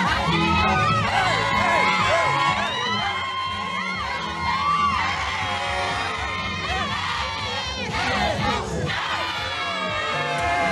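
Wedding guests cheering and shouting, with many high cries that rise and fall in pitch, over dance music with a repeating bass line.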